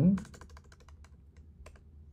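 Fast typing on a computer keyboard, about eight to ten keystrokes a second, thinning out after about a second, with one louder key press near the end before the typing stops.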